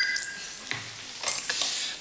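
A desk telephone's electronic ring stops just after the start as the call is answered. Short rustling and clattering of the handset being picked up and brought to the ear follow.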